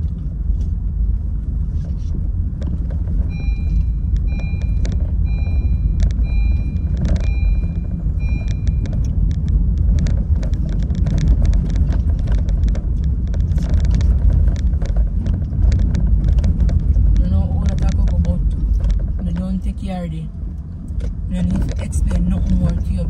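Steady low rumble of a car on the move, heard from inside the cabin. A few seconds in, the car's warning chime beeps about eight times, roughly one beep every 0.7 s, then stops.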